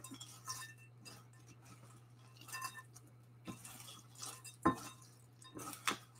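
Heat-proof spatula stirring butter-coated cereal and nuts in a glass mixing bowl: light scraping with scattered clinks against the glass, a few sharper ones in the second half.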